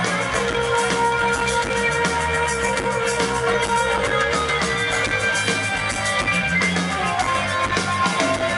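Live rock band playing an instrumental passage: electric guitars holding long ringing notes over a bass line and a steady drum beat.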